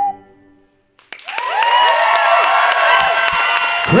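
A held ocarina note dies away, and about a second later an audience breaks into applause and cheering.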